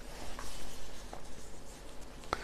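Sheets of paper rustling as they are picked up and handled, with a few faint soft ticks.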